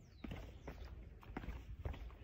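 Footsteps going down outdoor concrete steps, a few faint taps about two a second.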